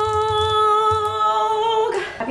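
A woman singing one long, steady high note with her mouth open, which stops abruptly just before the end.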